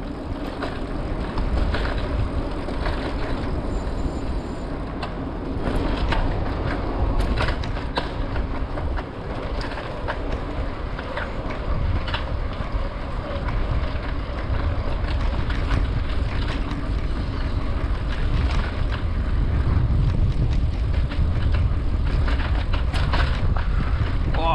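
A mountain bike riding along a city street: a steady low rumble of tyres and wind on the microphone, with frequent clicks and knocks as the bike rattles over cracked, patched asphalt. It grows somewhat louder in the last few seconds.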